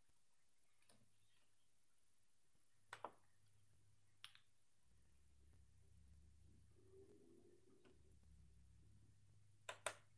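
Near silence in a small room, broken by a few faint clicks: a pair about three seconds in, a single one a second later, and a louder pair at the end. A low hum comes in about a second in and grows stronger about halfway through.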